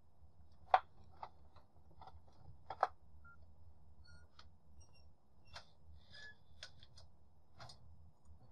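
Faint, scattered clicks of a computer mouse and keyboard, about a dozen irregular ones, the sharpest about a second in and again near three seconds, over a low steady hum.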